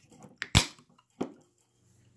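A few sharp clicks from handling an aluminium can of hard seltzer as it is picked up, the loudest a single snap about half a second in.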